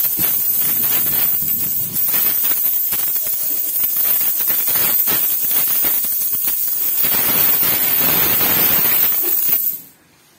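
A dense cascade of Philippine peso coins pouring out of clear plastic coin banks onto a heap of coins, a continuous metallic clatter and jingle that stops abruptly near the end.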